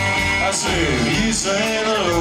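A country band playing live, with electric guitars, plucked upright bass and drums, the cymbals ticking steadily through bending guitar lines.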